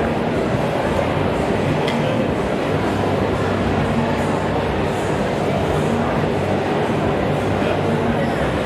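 Steady, loud din of a busy indoor hall with voices in it, with an electric hair clipper buzzing as it trims hair.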